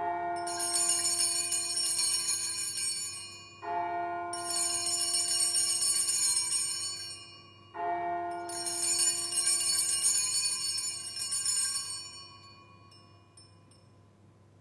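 Sanctus (altar) bells rung three times, about four seconds apart. Each ring is a bright jingle of small bells over a few clear ringing tones, and the third dies away near the end. Coming straight after the words of institution over the cup, they mark the elevation of the chalice at the consecration.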